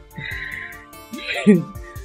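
A woman laughs briefly over soft background music. The laugh starts with a breathy giggle and peaks in a short burst about a second and a half in.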